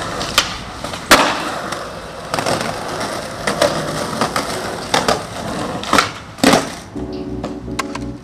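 Skateboard wheels rolling on concrete, broken by a series of sharp clacks and knocks from the board, the loudest about a second in. Organ-like keyboard music comes in near the end.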